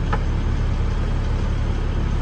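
Steady low engine rumble, as of a vehicle idling, with a light click just after the start.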